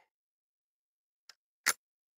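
A single shot from a Panzer Arms M4 12-gauge shotgun firing No. 4 buckshot, one sharp, very short bang near the end, with a faint click just before it.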